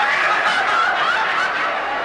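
A large crowd laughing uncontrollably, many voices giggling and screaming with laughter at once.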